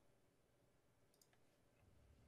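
Near silence: room tone, with a few faint computer-mouse clicks a little over a second in.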